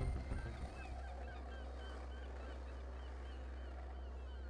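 Birds chirping: many short, quick chirps, over a steady low hum.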